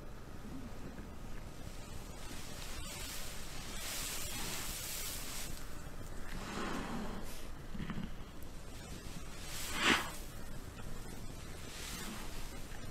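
A pig snuffling and stirring in straw, with rustling, low grunts and one short, sharp snort near the end.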